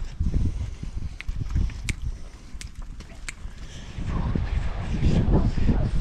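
A flock of shorn ewes trotting past over a dirt pen, a steady patter of hooves with a few sharp clicks among them, growing louder in the last couple of seconds.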